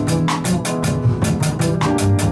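A live jazz piano trio plays a bossa nova tune: an acoustic piano, a double bass and a drum kit keeping a steady cymbal pulse of about four to five strokes a second.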